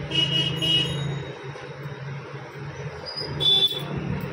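Road traffic: vehicle horns give a double toot near the start and a short toot near the end, over a steady low engine hum.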